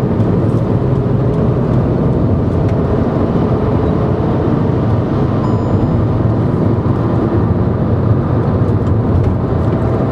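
Car engine and road noise heard inside the cabin: a steady hum as the car overtakes in a lower gear.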